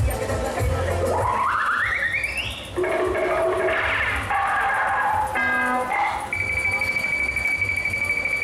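Loud fairground ride music played over the ride's loudspeakers, with a low beat and electronic effects: a rising stepped sweep about a second in and a long, steady high tone in the last couple of seconds.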